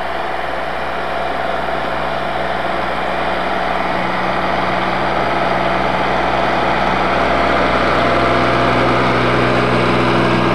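A small John Deere tractor's engine runs steadily while the tractor pushes snow with a rear blade, growing a little louder as it comes closer.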